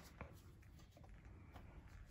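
Near silence: room tone, with a faint click about a quarter second in as a plastic tape box is handled.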